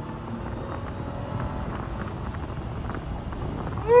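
Ram TRX's supercharged 6.2-litre V8 under steady acceleration at highway speed, heard from inside the cab along with road and wind noise.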